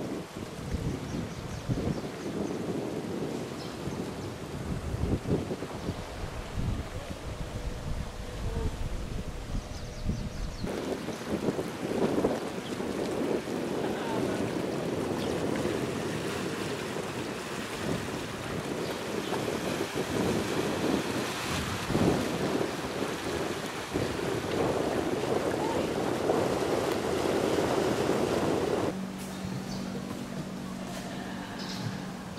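Wind buffeting an outdoor microphone in uneven gusts. After about ten seconds it changes to a denser, steadier rushing noise.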